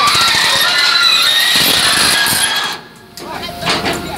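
Amphibious excavator moving on its pontoon tracks on a trailer deck: a loud, heavy grinding with thin high squeals from the tracks over the engine. It drops off sharply about three seconds in.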